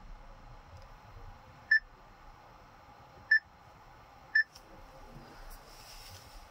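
Three short, identical electronic beeps at uneven gaps of a second or more, from a Chery Tiggo 5X's infotainment touchscreen confirming each tap as menu items are selected.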